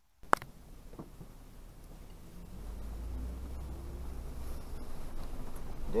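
Toyota 4Runner creeping along a leaf-covered dirt track in the woods, its engine and tyres a low rumble that grows gradually louder. A single sharp click sounds just after the start.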